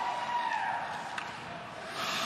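Ice hockey arena sound during play: skate blades scraping the ice over a steady crowd hum, with a single sharp knock about a second in.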